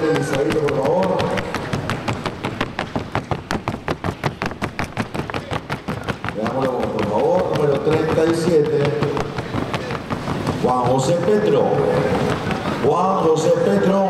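Paso fino horse's hooves beating a rapid, even rhythm on the competition sounding board, picked up by its microphone. The beats are loudest in the first half, then fade under a man's voice from about six seconds in.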